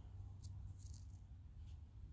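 Very quiet background: a faint low rumble with a few soft, short clicks scattered through it.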